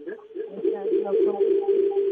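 Audio feedback over a telephone line, from the caller's radio playing the broadcast back into his phone. A wavering echo of voice smears into a steady howl held on one pitch through most of the second, then stops just after.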